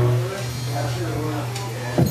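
Steady low hum from the stage amplifiers, left on as the song's last chord dies away, with scattered crowd voices and shouts over it.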